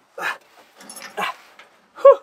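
A man grunting and groaning with effort: three short, breathy strains of the voice.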